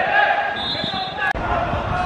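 Footballers' voices shouting on the pitch, with a short high steady tone partway through. The sound breaks off abruptly at about 1.3 s and picks up again with more low rumble.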